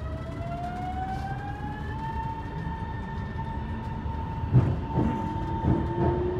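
Metro train's electric traction motors whining as it pulls away. The pitch rises for about two seconds and then holds steady over the carriage's low running rumble, heard from inside the car, with a few knocks near the end.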